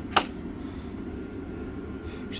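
A single sharp click about a quarter-second in, from handling the plastic model locomotive body in its foam-lined box, over a steady low background hum.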